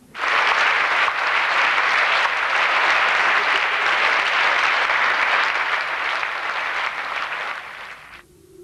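Large audience applauding, a dense steady clapping that starts abruptly and fades out near the end.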